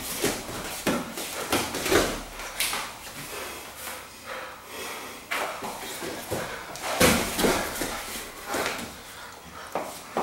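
Bodies grappling on vinyl-covered mats: bare feet and knees scuffing and thudding on the mat in an irregular string of scuffs and thumps. The heaviest thump comes about seven seconds in.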